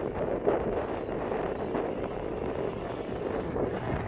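Steady wind noise on the microphone, with a tractor engine running close by underneath it.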